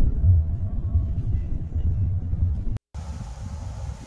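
Steady low rumble of a car heard from inside the cabin, which cuts off abruptly just under three seconds in; a fainter low rumble follows.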